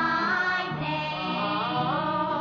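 A late-1960s Cantonese film song: singing over band accompaniment, from an old 45 rpm vinyl record with limited treble.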